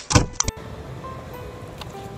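A loud thump, a blow or impact close to the microphone, right at the start with a sharp click after it; then a steady low rush of wind and surf on a rocky sea shore.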